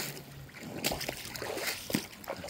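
Faint trickle of shallow brook water, with a few soft footsteps on the wet bank.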